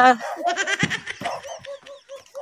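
A man laughs in a string of short bursts that trail off, just after a sung line breaks off.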